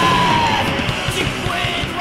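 Heavy metal song with a harsh yelled vocal over driving drums and guitar, the voice sliding down in pitch within the first second; the music grows steadily quieter as it fades out.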